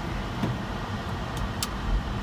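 Steady low rumble of a car, heard from inside the cabin, with a couple of faint clicks about a second and a half in.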